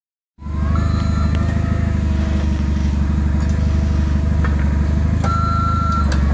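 Forklift engine running steadily. Near the end its reversing beeper starts with a long high beep.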